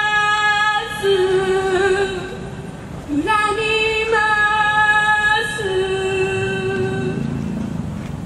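A woman singing a slow song, holding long steady notes one after another, each about a second long, with short breaks between them.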